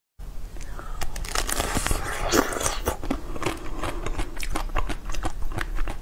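Close-miked biting and crunching into a hard-shelled blue novelty treat, a quick irregular run of sharp crackles and snaps.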